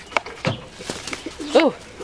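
A pigeon cooing once, a short call that rises and falls in pitch, with a few light taps close to the microphone before it.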